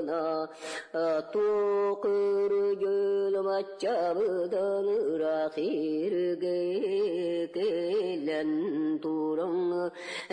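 Unaccompanied solo woman's voice singing a Yakut epic hero's song (bukhatyyr yryata), in long held notes broken by quick wavering turns of pitch.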